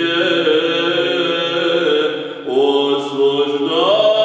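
Male voices singing Byzantine chant in the Saba mode: a melody line held over a steady low drone note. The singing breaks briefly about two and a half seconds in, then resumes with the melody rising near the end.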